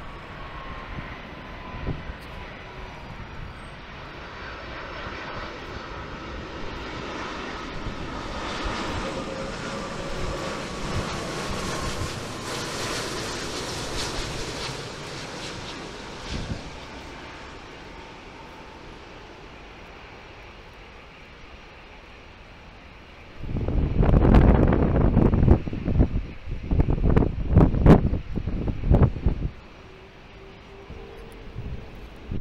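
Airbus A330-300 airliner passing low on final approach with gear down: its jet engine noise builds, peaks about halfway through and then fades, with a faint whine slowly falling in pitch. In the last seconds, loud gusts of wind buffet the microphone.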